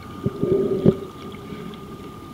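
Muffled underwater water noise around a submerged camera, sloshing and bubbling with a couple of knocks, over a faint steady tone.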